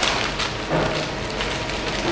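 A paper bag rustling and crinkling as it is opened and handled, a run of small crackles.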